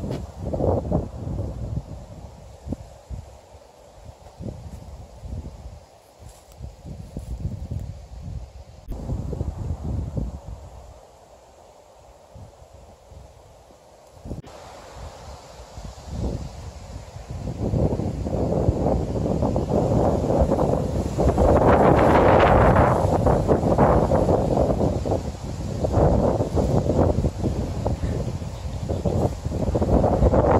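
Wind gusting across the microphone, a rumbling, uneven rush that comes and goes. It swells to a louder, fuller gust from a little past the middle.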